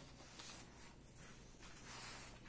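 Near silence: room tone with faint handling rustles as the model engine is turned on its wooden base.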